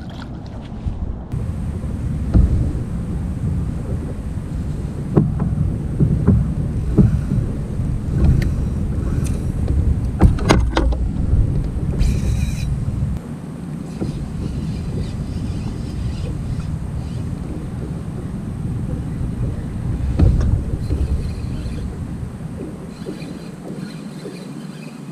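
Wind buffeting the camera microphone, a heavy low rumble, with a few sharp knocks about ten seconds in. The rumble eases a little past the middle.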